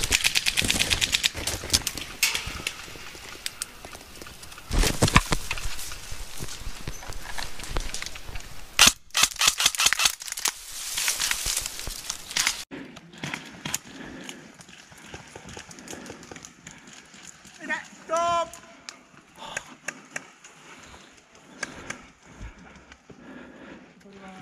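Electric airsoft rifle, an XM177E1 replica, firing rapid full-auto bursts of BBs: a long burst at the start, another around five seconds in, and a longer run of bursts in the middle. After that only scattered single shots.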